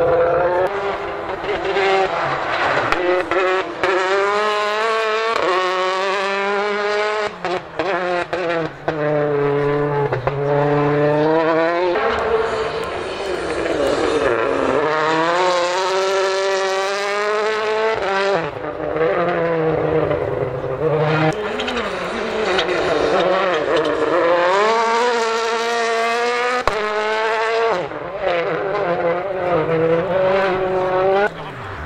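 Rally cars passing one after another, their engines revving hard up through the gears. Each pass has the engine note climbing in pitch and then dropping sharply at each gearchange.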